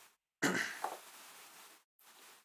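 A man's voice saying a single short "no" about half a second in, trailing off within a second or so.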